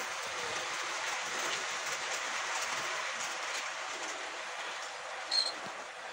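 Model railway train running past close by on the track, its wheels and motor making a steady rattling whirr, with a brief high squeak near the end.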